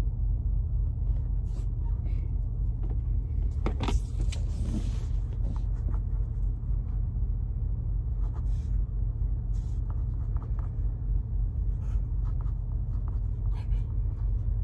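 Steady low rumble of a semi truck's idling diesel, heard from inside the sleeper cab, with faint pen scratches and paper rustles on the table.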